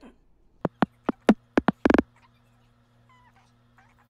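Kick drum one-shot samples auditioned one after another, about seven short hits in quick succession in the first two seconds, the last one longer and fuller.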